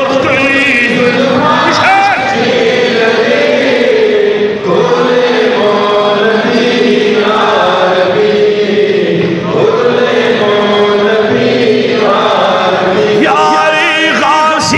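A man chanting a Pashto naat, devotional verse in praise of the Prophet, without instruments, drawing out long held notes that waver slowly in pitch.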